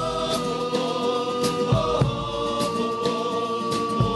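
Men's carnival choir singing in close harmony, holding a long chord. Spanish guitars strum under it, and a drum beats time in short regular strokes.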